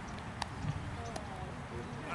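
Outdoor ambience at a cricket ground: a steady low rumble with faint, distant voices of players, and two sharp knocks, one about half a second in and one just past a second.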